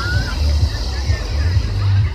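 Wind buffeting the phone's microphone with a heavy, uneven low rumble, over the hiss of breaking surf and faint voices of a beach crowd.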